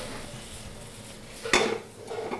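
Frying pan of sliced mushrooms tossed on a gas stove, with a faint steady hiss of frying. About one and a half seconds in comes a single sharp metallic clank, the loudest sound, as the pan is set back down on the burner grate.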